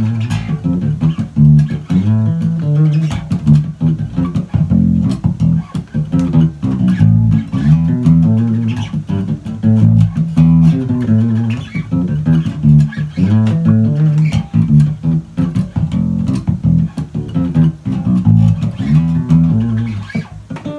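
Electric bass guitar played fingerstyle: a continuous salsa bass line of low plucked notes in a steady rhythm.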